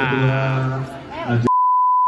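A steady, pure electronic beep tone starts about one and a half seconds in and cuts out all other sound, the kind of bleep laid over the sound track in editing.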